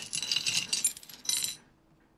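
Small metal objects jingling and clinking together in a quick flurry of bright, ringing clinks for about a second and a half, then stopping.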